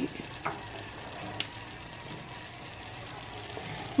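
Diced apples cooking down in a saucepan on a gas burner, giving a soft, steady sizzle. A sharp single click comes about a second and a half in, from the stove's burner knob being turned to cut the heat.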